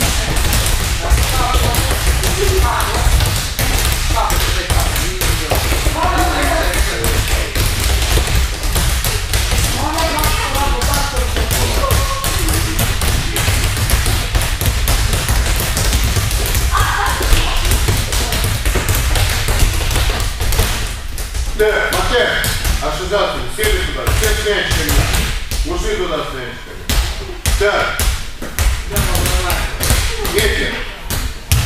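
Several volleyballs being bounced repeatedly on judo tatami mats: a dense, irregular stream of dull thuds and taps from many balls at once.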